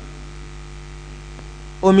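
Steady electrical mains hum, a low buzz with evenly spaced overtones, in a pause in a man's speech. His voice comes back near the end.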